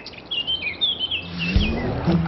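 Small birds chirping: a quick run of short, high tweets, then a low steady tone comes in about a second and a half in.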